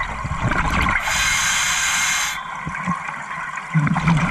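Scuba diver breathing through a regulator underwater. The gurgle of exhaled bubbles tails off, then a steady inhale hiss lasts about a second and a half. The rumble of the next exhale's bubbles starts near the end.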